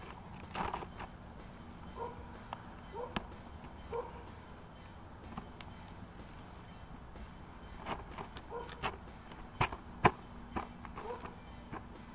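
Quiet, scattered taps, scrapes and clicks of hands working a plastic roof vent in under loosened asphalt shingles, with a few sharper clicks in the last few seconds.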